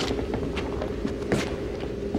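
Actors' footsteps and shuffling on a stage floor: a few soft knocks and scuffs, the sharpest about a second and a half in, over a steady hum in the recording.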